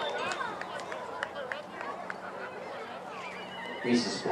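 Spectators and players at a youth football game calling out: scattered high, gliding shouts and voices over the field, with a few sharp clicks.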